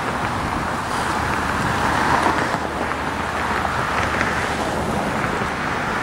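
1978 Volkswagen T2 bus's air-cooled flat-four engine running as the van drives slowly by: a steady rumble with no sudden changes.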